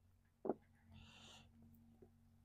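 Faint rustle of hands sifting through loose potting compost, with one short, low sound about half a second in.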